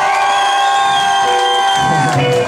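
Live band holding one long sustained note at the end of a song, with the crowd cheering over it.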